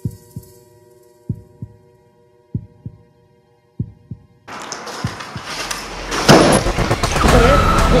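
Heartbeat sound effect: a double thump about every 1.25 seconds over a low steady drone, four beats in all. About four and a half seconds in it cuts suddenly to loud rustling noise with scattered knocks from a handheld recording.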